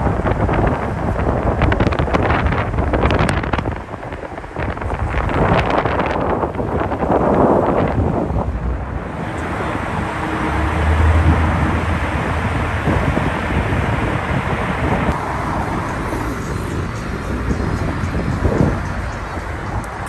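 Wind buffeting the microphone in gusts over city street traffic noise. About nine seconds in it settles into a steadier traffic hum, with a low vehicle rumble around the eleventh second.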